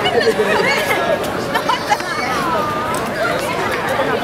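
Crowd chatter: many voices talking over one another at once, none standing out.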